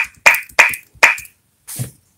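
Four sharp clicks in the first second or so, about three a second, then a duller knock near the end.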